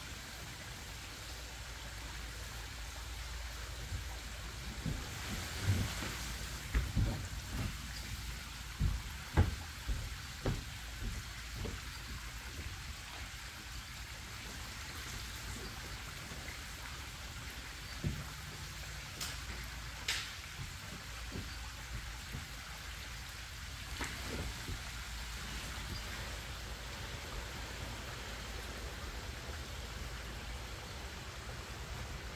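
Water dripping and pattering from a soaked, rolled area rug onto a plastic grated drain floor. A cluster of dull thumps comes about five to eleven seconds in as the wet rug is shifted, with a few scattered knocks after.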